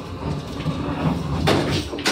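Westinghouse hydraulic elevator's brushed-metal car doors sliding shut over a steady hum, meeting with a thump about one and a half seconds in.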